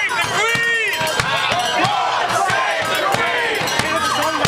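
Many voices shouting and calling out together, with beats of a marching bass drum among them.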